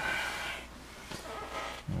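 Quiet room tone with a steady low hum from running bench test equipment; a man's voice starts near the end.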